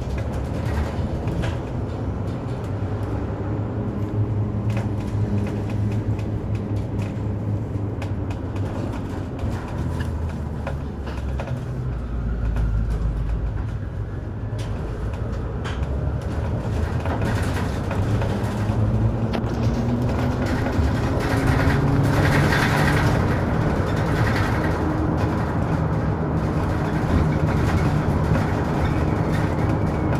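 Mercedes-Benz Citaro G articulated bus driving, heard from inside at the front: steady engine and road noise, with the engine note rising as the bus picks up speed in the second half.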